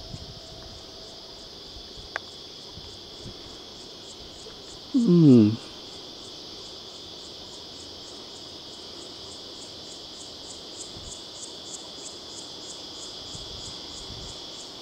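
Steady, high-pitched chorus of insects in bushland. In the second half a pulsing call joins it at about three pulses a second.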